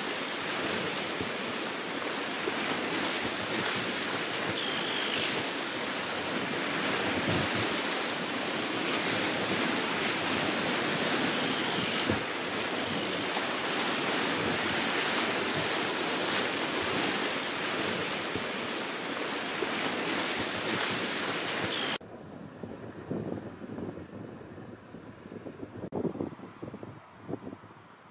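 Wind and small waves washing onto a lake shore, a steady rushing noise. About 22 seconds in it cuts abruptly to a quieter sound of irregular wind gusts buffeting the microphone.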